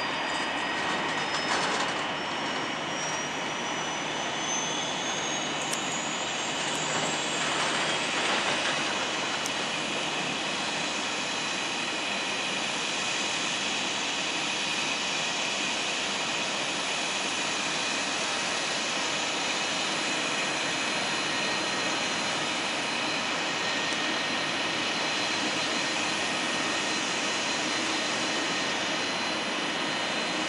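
Jet engines of a taxiing Airbus A330-200 at idle thrust: a steady rushing whine with several steady high tones. A higher whine rises in pitch over the first eight seconds or so.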